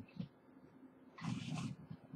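A short breathy vocal sound from a person, like a drawn-out exhalation with a low voice in it, about a second in, after a brief faint sound at the start.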